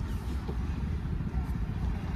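Aftermarket electric power seat in a Hyundai Creta, its motor running with a low steady hum as the driver's seat is adjusted.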